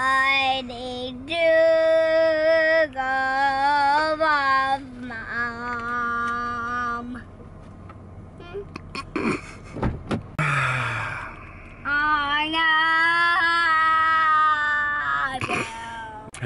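A young child singing long, held, wordless notes with a wide vibrato. There is a break in the middle with a few clicks and a brief noisy sound, then the singing resumes.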